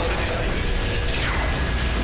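Science-fiction battle sound effects for a giant robot in combat: a continuous low rumble and mechanical clatter, with a falling whistle about a second in.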